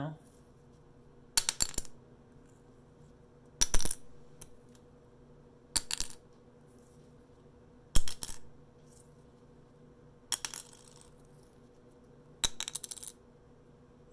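Guitar picks dropped one at a time onto a glass tabletop: six drops about two seconds apart, each a short clatter of a few quick bounces.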